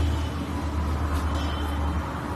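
Steady low hum with a faint background noise: room tone.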